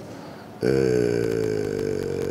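A man's drawn-out hesitation sound, a held 'aaah' between phrases, starting about half a second in after a short silence and sustained on one slowly sinking pitch.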